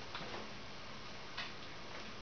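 Quiet room with two faint short clicks, about a second and a quarter apart.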